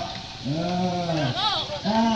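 A man's voice holding one long, drawn-out vowel, followed by a brief high rise-and-fall sound about one and a half seconds in.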